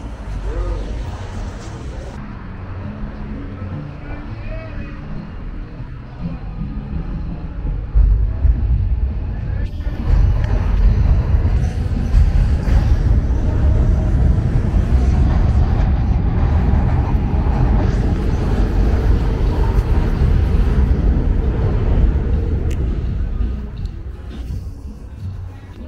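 City street sound heard while walking, with passers-by's voices and traffic. About eight seconds in, a loud, uneven low rumble takes over.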